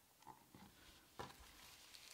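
Near silence with faint handling noise of hands on a small plastic controller box and its cables, including a soft click about a second in.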